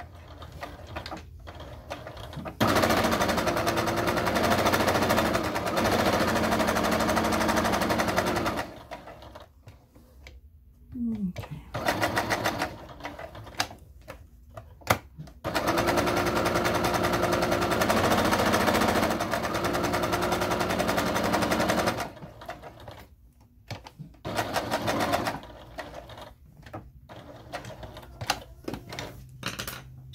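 Electric domestic sewing machine stitching at a steady speed. It sews in two long runs of about six seconds each, with shorter bursts and brief stops between them, while a rectangular outline for a zipper opening is stitched.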